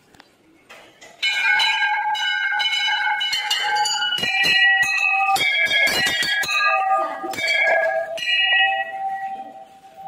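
Temple bells rung by hand: from about a second in, several bells are struck again and again, their overlapping metallic tones ringing on together, then dying away near the end.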